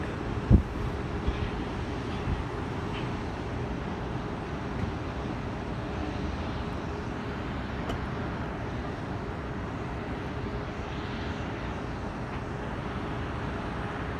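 Distant Boeing 777 jet engines giving a steady rushing noise as the airliner powers up on the runway for takeoff, with a single thump about half a second in.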